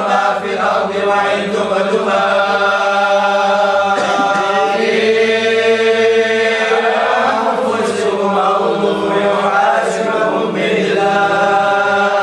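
A group of voices chanting Qadiriyah dhikr together, in long drawn-out notes, with one note held and bending in pitch through the middle.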